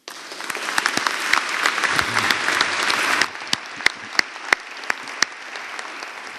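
Audience applause that starts at once and is full for about three seconds, then thins to scattered single claps and fades away.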